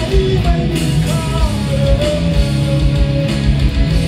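Rock music on two distorted SG electric guitars over a steady low beat. A held lead melody line bends in pitch about a second in and then sustains.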